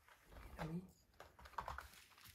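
Faint light clicks and scratches of a rabbit's claws on a plastic tarp and mats, with a short quiet murmur of a voice about half a second in.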